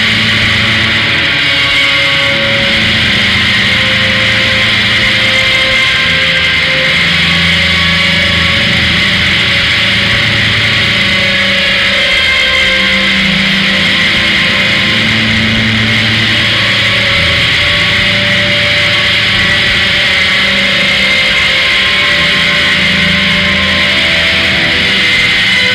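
Noise rock: a loud, unbroken wall of heavily distorted electric guitar over long held low bass notes, without a clear beat.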